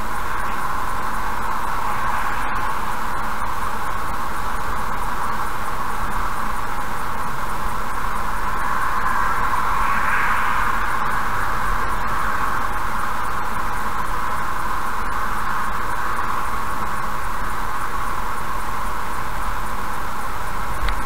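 Steady road and tyre noise heard inside a car cruising at about 77 km/h, swelling briefly about halfway through as another car passes close alongside.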